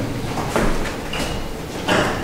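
Meeting-hall room noise with light shuffling, two knocks, one about half a second in and one near the end, and a brief high squeak in the middle, while councillors raise their hands in a silent vote.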